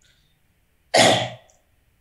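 A single short cough about a second in, starting sharply and fading within half a second.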